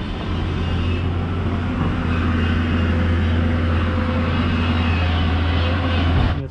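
Hyundai crawler excavator's diesel engine running with a steady low drone, over the rush of river water.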